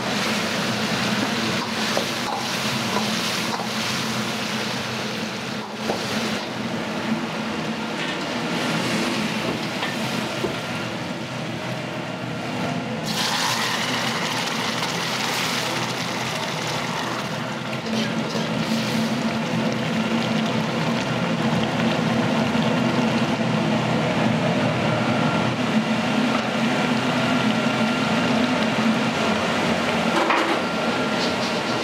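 Steady roar of a restaurant kitchen's gas wok burners and exhaust hood, with mapo tofu bubbling and a metal ladle knocking against the wok a few times early on. A louder hiss comes in about thirteen seconds in and lasts a few seconds.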